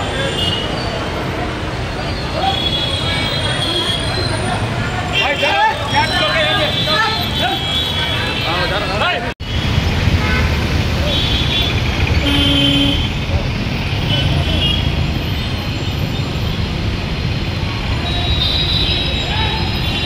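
Busy street traffic with vehicle horns tooting several times over people's voices. The sound cuts out briefly about nine seconds in.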